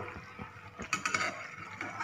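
Metal spatula scraping and clinking against a metal kadhai as sticky mango pieces in thick sugar syrup are stirred, with a few sharp clicks about a second in.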